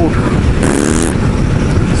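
Honda CBR1000F motorcycle running steadily at road speed with heavy wind noise on the microphone. About half a second in comes a brief hummed, breathy noise from the rider, about half a second long, as he works his cold-numbed lips.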